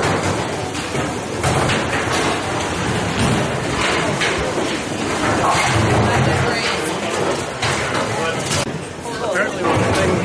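Bowling alley din: bowling balls rumbling down the lanes and pins being struck, with scattered knocks over a steady murmur of voices.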